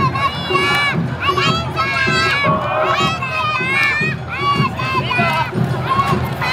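High-pitched children's voices shouting Awa Odori dance calls in short, quick repeated bursts, each call bending up and down in pitch, over the murmur of a large crowd.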